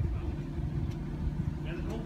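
An engine idling with a steady low hum, with voices of people talking nearby.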